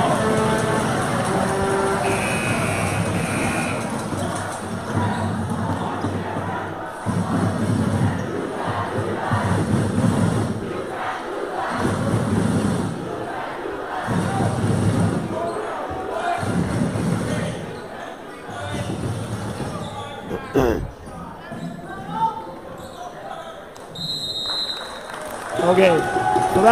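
Crowd noise in a gymnasium with a basketball bouncing on the hardwood court, with short high whistle-like tones about two seconds in and again near the end.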